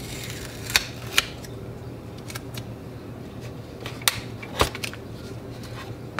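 Tape being peeled off the end of 120 roll film and its paper backing handled at the slot of a plastic daylight developing tank: scattered sharp clicks and crackles, four louder ones at irregular intervals, over a low steady hum.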